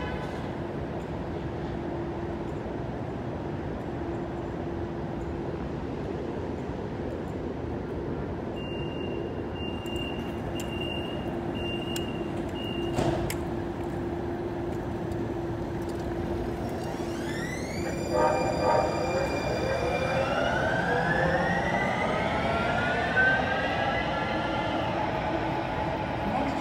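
Light-rail train's electric drive whine, gliding up in pitch and then rising and falling over the last third, over a steady low hum of street noise. A faint high steady tone comes and goes for a few seconds midway.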